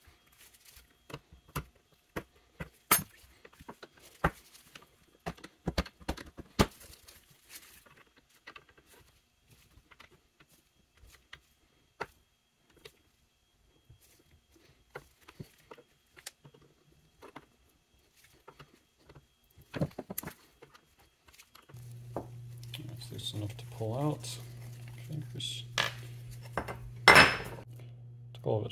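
A brass tool clicking and scraping on the steel butt plate and screws of a Carcano rifle stock: many quick, sharp metal clicks at first, thinning out later. A steady low hum starts about three-quarters of the way in, and a single loud knock comes just before the end.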